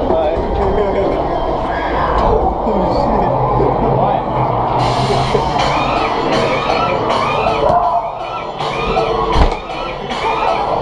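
Loud music with indistinct voices and crowd noise over it; the music becomes brighter and fuller about five seconds in.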